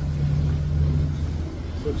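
A road vehicle's engine running: a steady low hum that eases off about a second and a half in.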